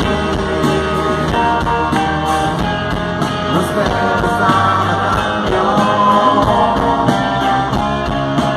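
Live rock band playing through a festival PA, heard from the crowd: electric guitar, drums and keyboards with a sung vocal.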